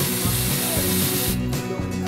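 Spray gun hissing as it sprays white paint onto a clay idol, then cutting off about a second and a half in. Background music with a steady low beat plays under it.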